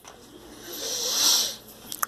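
A single breath close to the microphone: a soft hiss that swells and fades over about a second and a half.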